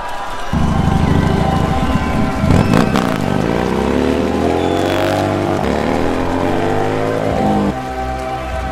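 Harley-Davidson V-twin motorcycle engine starting to run about half a second in, then revving, its pitch rising and then falling as it rides off. Background music with steady held notes plays under it.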